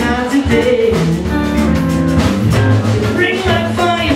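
Live rock band playing an instrumental jam: drum kit, bass guitar, electric guitar and congas, with a pitched lead line that bends and changes note over the groove.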